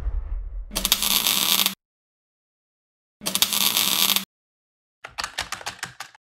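Sound effects for animated title graphics: a low whoosh dying away at the start, two hissing, noisy bursts about a second long with silence between them, then a quick stutter of clicks near the end.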